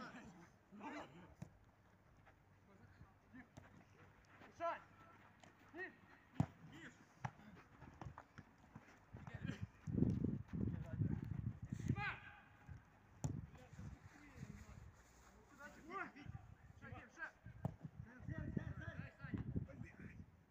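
Players' voices calling out across a football pitch during play, heard at a distance, with a few sharp knocks. There are low muffled swells in the middle and near the end.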